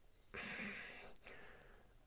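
A soft breath drawn in by a man pausing in his talk, starting about a third of a second in and fading over about a second.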